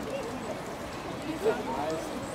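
Indistinct background voices of people mixed with bird calls, with one brief louder sound about one and a half seconds in.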